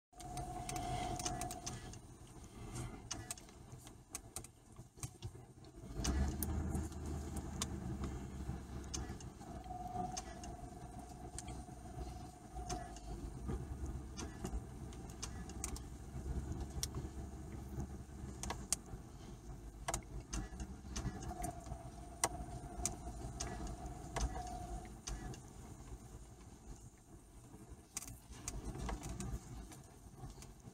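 A car's engine running, heard from inside the vehicle as a steady low rumble that grows louder about six seconds in, with scattered small clicks and a faint whine that comes and goes a few times.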